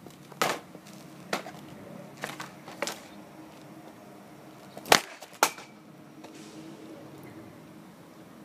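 A hockey stick's blade knocking sharply against the pavement several times, then the loudest crack of a slapshot about five seconds in, with a second knock half a second later.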